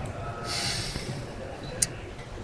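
A man's short, sharp breath out through the nose, about half a second in, followed by a single brief click near the end.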